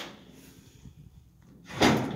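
Rustling, scraping noise: faint rustles, then one short, louder scrape near the end that trails off.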